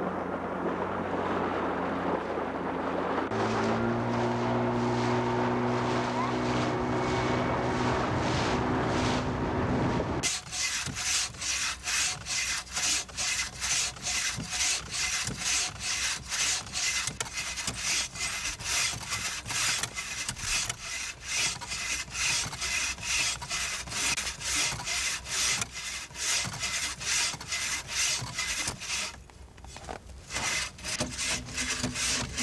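A bow saw cutting a log, its blade rasping through the wood in steady back-and-forth strokes from about ten seconds in, pausing just before the end. Before that, an engine hums steadily, its pitch stepping up about three seconds in.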